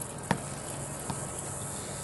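A tennis ball bouncing on a stone pool deck: one sharp bounce shortly after the start and a softer one about a second in, over a steady background hiss.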